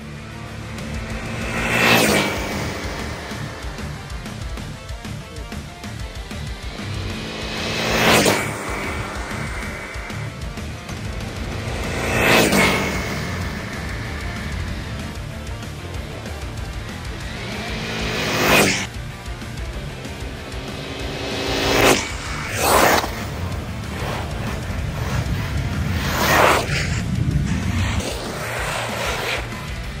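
Arrma Talion XL RC car's brushless motor whining past in about six high-speed passes, each a swelling whoosh with a whine that rises and then falls in pitch as it goes by. Background music plays underneath.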